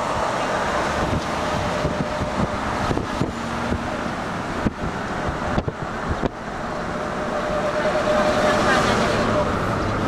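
Car driving along a road, heard from inside: steady road and engine noise with wind on the microphone, and a few light knocks in the middle.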